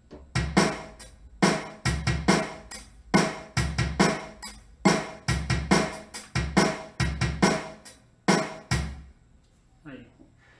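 Virtual rock drum kit in AIR Ignite, played from a keyboard and recorded as a steady beat at 140 BPM. The hits stop about nine seconds in.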